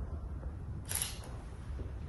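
A single camera shutter click about a second in, over a steady low room hum, while a document is being signed.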